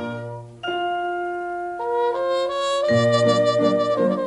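Instrumental passage of a 1950s Japanese orchestral pop recording between sung lines: long held brass notes at a steady pitch, stepping upward midway, with the rhythmic bass and accompaniment coming back in about three seconds in.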